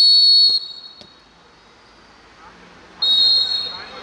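Referee's whistle blown twice: a long shrill blast at the start that stops play, then a shorter blast about three seconds in that signals the free kick to be taken.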